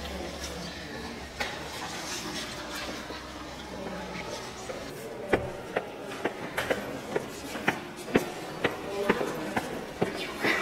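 Background voices murmuring, then from about halfway a run of sharp, short taps, roughly two a second, loudest of all the sounds.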